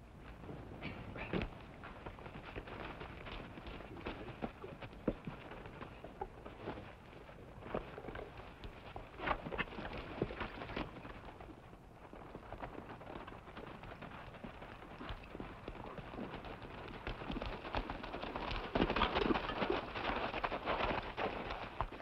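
Hoofbeats of several ridden horses on dry, rocky ground: irregular clopping that grows louder near the end as the horses come close.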